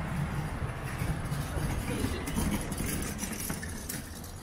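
City street ambience: a steady low rumble of traffic, with faint passing voices and a few light clicks in the second half.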